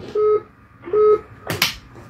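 Two short electronic telephone beeps about three-quarters of a second apart, a phone-line tone as a caller's line is put through, followed by a brief burst of noise near the end.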